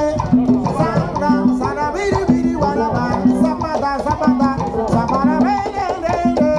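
Live Afro-Cuban rumba: conga drums (tumbadoras) playing a steady interlocking rhythm of open tones, with voices singing over it.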